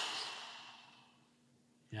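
A man's long exhaled sigh, starting sharply and fading out over about a second.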